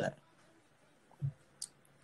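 A man's spoken word ends, then a quiet pause with a soft low sound just over a second in and two faint short clicks soon after.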